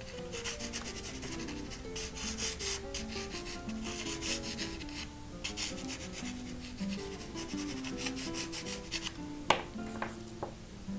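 Soft pastel stick scrubbed across the painting surface in rapid, scratchy strokes, with background music. A single sharp knock near the end is the loudest sound.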